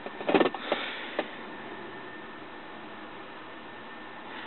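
Steady hiss and low hum inside the cabin of a 2000 Ford Expedition with the engine running. In the first second there are a few short clicks and knocks as the OBD-II adapter is pulled out and plugged back into the diagnostic port under the dash.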